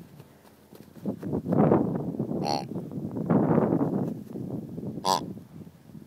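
Latex grunter dog toys squeezed to make their grunt: a series of rough grunts after a quiet first second, with two short, high-pitched notes between them.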